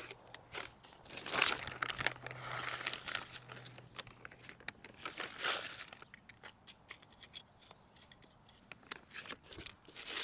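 Hand trowel digging and scraping through loose garden soil: scattered crunches and small clicks, with two longer scraping rustles, one about a second in and one a little past the middle.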